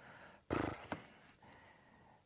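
A short, breathy non-speech sound from a woman's voice, such as a huff of breath through the nose, about half a second in, followed by a fainter trailing sound.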